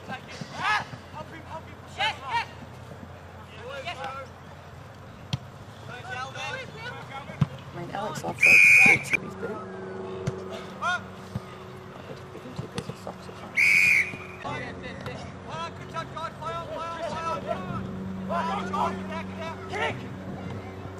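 Two blasts of a referee-style whistle, an Australian rules football umpire's whistle: a longer blast about eight and a half seconds in and a shorter one about five seconds later. Faint spectator voices carry on underneath.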